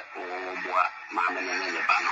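A woman speaking: only talk, no other sound stands out.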